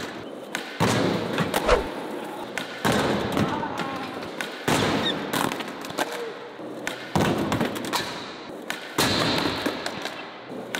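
Eight-wheeled skateboard hitting the concrete floor over and over, about every two seconds. Each thump is followed by a rattling roll that dies away.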